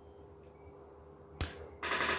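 Faint room tone, then a single sharp click about one and a half seconds in.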